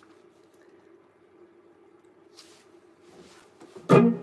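Faint steady hum from an electric guitar amplifier, then near the end one chord is strummed on the electric guitar and rings out through the amp.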